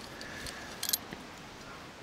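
Low, steady background hiss with one brief, sharp high click just under a second in.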